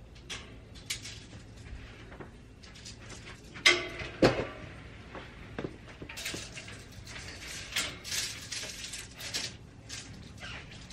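A tall black metal shelving rack being handled and shifted: two knocks with a short metallic ring about four seconds in, then a run of clicks and rattles.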